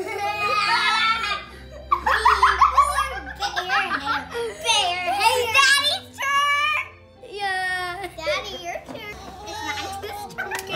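Children giggling and laughing, with a woman laughing along.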